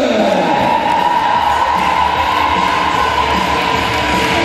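Crowd cheering in a large hall over loud music. A pitched tone slides down at the start, then rises and holds steady.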